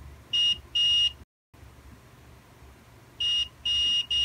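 Digital multimeter's continuity beeper giving short, high beeps, two near the start and two near the end, as the probe touches the logic board: the beep means the short to ground is still there after the capacitor was removed.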